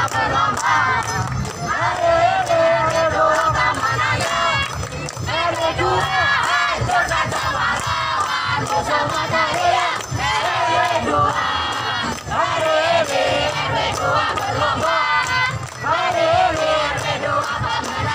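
A group of performers chanting and shouting a yel-yel team cheer together, loud and rhythmic, with sharp beats throughout.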